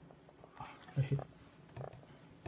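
A hand wiping marker off a whiteboard, soft and brief, with a man saying "okay" about a second in.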